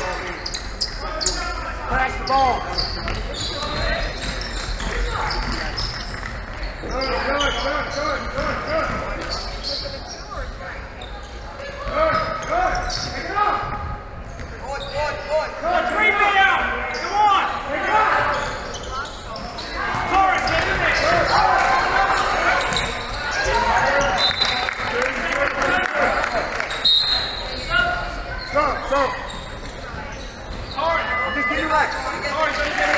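Basketball bouncing on a hardwood court during play, with voices calling out across the gym.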